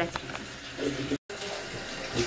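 Water running steadily from a kitchen tap into a sink, starting after an abrupt cut a little past halfway.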